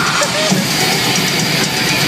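Heavy metal band playing live: distorted electric guitars over a drum kit, a loud, dense, unbroken wall of sound.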